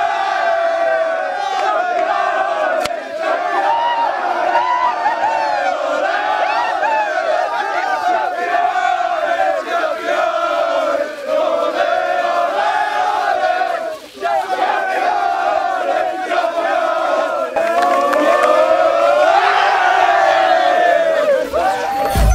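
A group of men chanting and shouting together in a victory celebration, many voices at once and unbroken apart from a short dip about fourteen seconds in, growing louder near the end.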